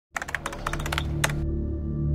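Rapid, irregular typing clicks for about a second and a half, a typed-text sound effect, over a low steady drone that carries on after the clicks stop.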